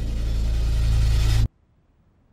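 Film soundtrack drone for an underwater scene: a deep low hum under a rising hiss, swelling louder, then cutting off abruptly about one and a half seconds in to near silence.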